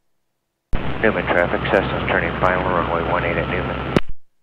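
A radio transmission over the aircraft's radio: a thin, band-limited voice that opens suddenly about three quarters of a second in and cuts off at the end, with a steady low hum under it.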